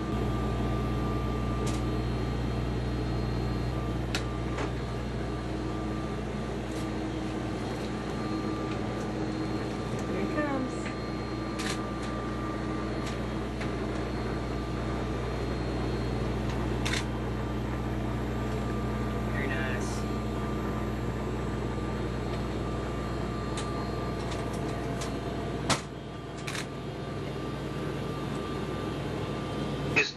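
Steady hum of the space station's cabin ventilation fans and equipment, several fixed tones over a low rumble. Scattered light clicks and knocks sound through it. A sharp click comes near the end, after which the low part of the hum drops away.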